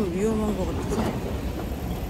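Busy street ambience with a steady low rumble of traffic and wind on the microphone, and a brief voice sound right at the start.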